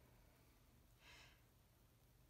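Near silence: room tone, with one faint short hiss about a second in.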